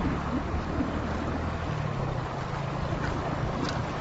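Floodwater running across a dirt road, heard through a phone's microphone with wind buffeting it: a steady rush of noise.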